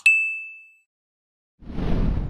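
Subscribe-button animation sound effect: a quick double mouse click, then a single bright notification-bell ding that rings out and fades within a second. A rushing noise swells in near the end.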